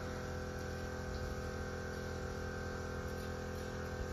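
Steady electrical hum, an unchanging drone of several fixed pitches under faint hiss, with no distinct work sounds.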